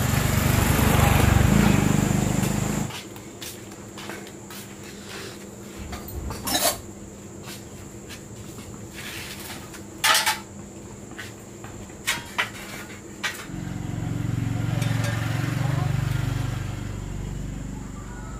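Metal hardware being handled on store shelves: several sharp clanks and clinks of metal items knocked together, spread over the middle of the stretch. A low rumble fills the first few seconds and returns near the end.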